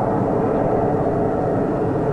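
Fighter jet engines running as the jets move along the runway, a steady rushing noise.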